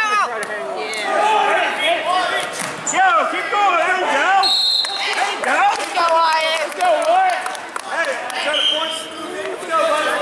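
Several voices shouting in a large gym hall during a wrestling bout, overlapping throughout. A short, steady high-pitched tone sounds about halfway through.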